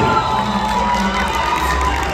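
Theatre audience cheering and calling out between songs.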